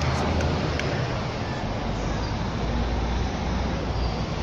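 Steady city street noise at night: a low traffic rumble under an even hiss, with no clear single event.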